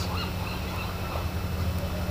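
Outdoor background: a steady low hum, with a few faint short high chirps near the start.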